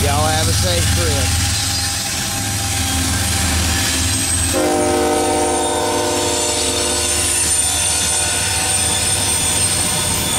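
Diesel freight locomotives passing close by with a steady engine rumble and rolling car noise, the lead unit's air horn blowing for the crossing. The horn chord wavers and drops off just after the start, and a steady horn chord sounds again from about halfway in.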